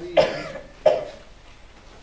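A woman coughs twice, the second cough coming under a second after the first.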